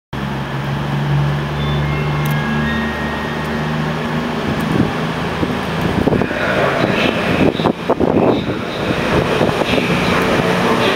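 Class 221 Super Voyager diesel-electric multiple unit approaching slowly, its underfloor diesel engines running with a steady low note. From about six seconds in it grows louder and rougher, with a run of irregular knocks as it comes closer.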